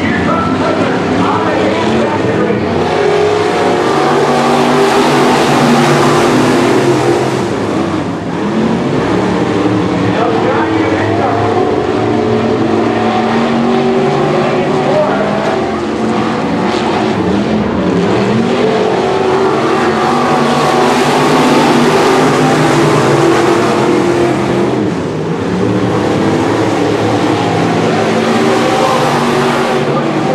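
Several IMCA Sportmod dirt-track race cars' V8 engines running around the oval. The sound swells as the pack passes, loudest a few seconds in, again past the middle and near the end, and eases briefly between passes.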